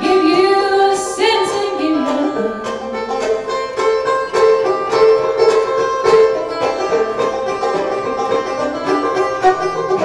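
Live bluegrass fiddle and banjo playing together: the banjo picks a fast, steady run of notes while the fiddle bows the melody, sliding between notes in the first couple of seconds.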